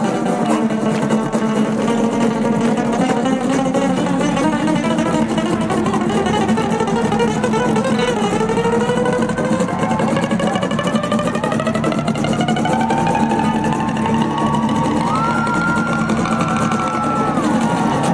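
Two amplified acoustic guitars played live as a duo: fast rhythmic strumming against rapid picked melody lines, loud and unbroken.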